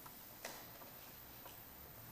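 Very quiet room tone broken by a few faint, short clicks, the clearest about half a second in and a softer one about a second and a half in.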